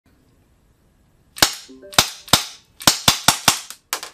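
Airsoft pistol firing about nine shots at a target, starting about a second and a half in: the first few about half a second apart, then quickening to a rapid string of sharp reports.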